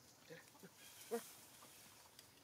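A few short, faint monkey calls from macaques, with one louder, brief call about a second in, over quiet outdoor background.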